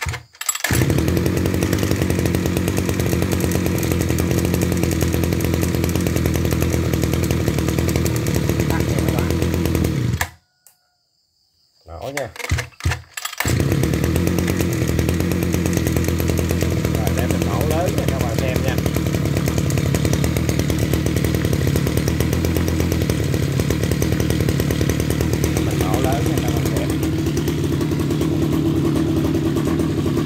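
Mitsubishi TL33 33cc two-stroke brush cutter engine starting on the recoil starter and idling steadily. About ten seconds in it cuts out, then after a few short pulls it starts again and runs on.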